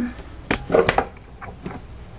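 A few sharp knocks and clicks of handling: one about half a second in and a quick cluster around the one-second mark, as the camera is moved and set down on a hard surface.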